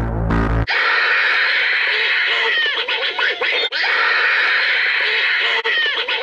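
Horror soundtrack: a deep synth drone cuts off under a second in and is replaced by a loud, dense layer of shrill, wavering squeals and chattering. The layer restarts twice, like a looped effect.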